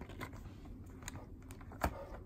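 Plastic cosmetic packaging being handled and set down among other packaged cosmetics: light scattered clicks, with one sharper click near the end.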